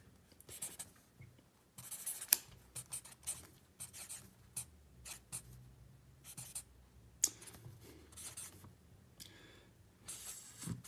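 Pen writing on paper in a spiral notebook: irregular short scratchy strokes as words are written out by hand, with a sharp tick about two seconds in and another about seven seconds in.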